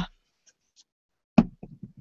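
A sharp knock followed by a few light clicks as small paint jars are picked up and handled on a worktable, after a stretch of near silence.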